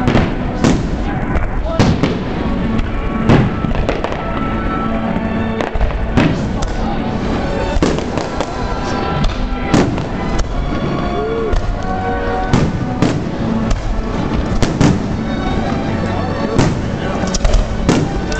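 Professional Zambelli aerial fireworks display: shells bursting with sharp bangs at irregular gaps of about a second, over music playing along with the show.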